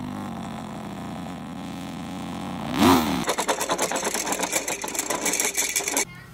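Engine-like revving sound as a small toy car is pushed across a quilt: a steady hum, a loud swell about three seconds in, then a fast, dense rattling whir that stops abruptly at the end.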